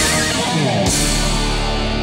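Distorted electric guitar playing: a held note with wide vibrato breaks off, the pitch slides steadily downward, and just under a second in a new low chord is struck and left ringing.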